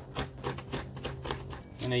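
A thin metal hand tool scraping and scratching along a groove in polystyrene foam, in quick, rough strokes several times a second.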